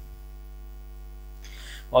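Steady electrical mains hum in the recording, with a faint short hiss near the end.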